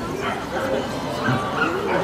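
A dog barking a few short times, with people talking in the background.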